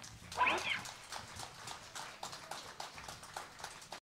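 A single high, arching whoop from a listener, then faint, fairly steady clapping at about five claps a second from a small audience.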